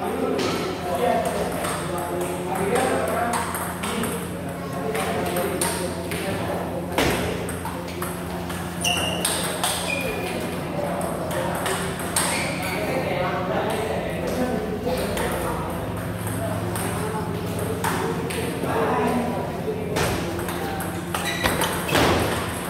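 Table tennis ball being hit back and forth: sharp clicks of the ball off the paddles and bouncing on the table, in irregular runs of rallies.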